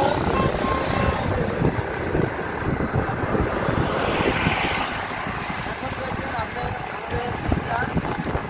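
Wind buffeting the microphone in low, gusty rumbles while riding along a road at speed, mixed with road and traffic noise from passing motorbikes.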